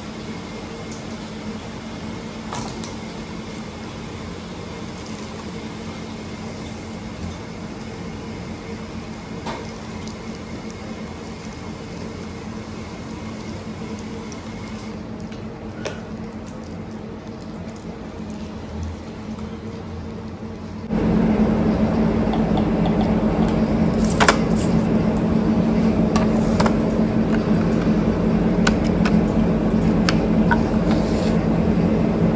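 Steady machine hum, with a low tone, from the water refill equipment, and a few faint clicks and knocks as bottles are handled. About two-thirds of the way through the hum becomes much louder.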